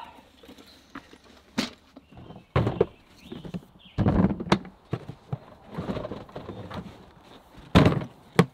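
Hard plastic Milwaukee Packout tool boxes knocking and thunking as they are lifted off a stack and set down, with a run of small rattles and clatters between the bigger knocks. A sharp clack comes near the end as the rolling box's telescoping handle is pulled up.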